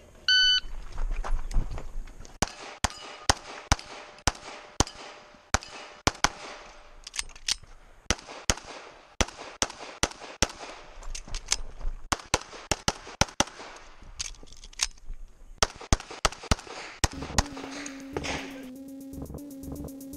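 Electronic shot-timer start beep, then a fast string of .40 S&W major pistol shots from a Sig Sauer 1911 MAX, mostly in quick pairs with a few longer pauses at the three reloads. The shots stop about 17 seconds in and a music track with a steady beat comes in.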